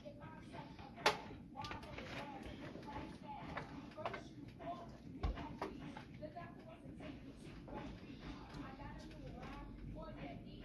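A small metal shot glass is set down on the stovetop with a sharp clink about a second in. A wooden spoon then stirs sliced onions, carrots and tomatoes in a skillet, with soft scrapes and light knocks against the pan.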